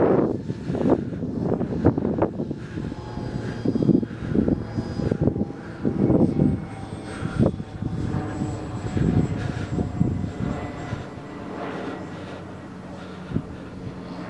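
Electric motor and propeller of a Dynam Beaver RC model plane flying overhead: a faint, steady whine. Irregular low gusts of wind buffet the microphone and are the loudest sound, easing off near the end.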